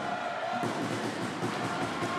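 Steady sports-hall ambience: an even wash of background noise with a few faint held tones running through it.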